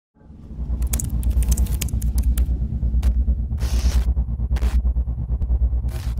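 Logo intro sting: a deep pulsing bass rumble that fades in at the start, overlaid with scattered glitchy digital clicks and crackles and a short burst of hiss about halfway through.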